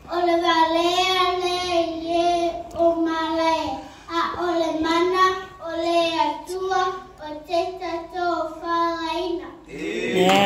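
A young girl singing solo into a microphone, unaccompanied, in several held phrases with vibrato and short breaths between them.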